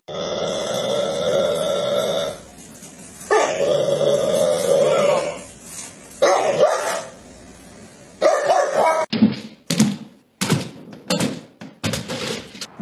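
A dog growling and barking in long, drawn-out bouts at its own reflection in an oven door, four bouts with short pauses between them. In the last few seconds come quicker short barks.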